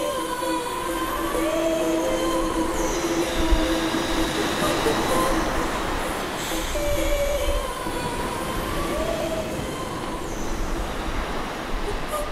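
Steady noise of sea surf with several long, slightly wavering tones layered over it; the same pattern of tones comes round again about six seconds later.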